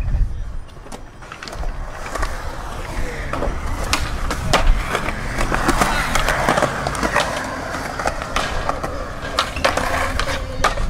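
Skateboard urethane wheels rolling on a concrete skatepark surface, growing louder through the middle. Several sharp clacks of the board popping and landing are scattered through it.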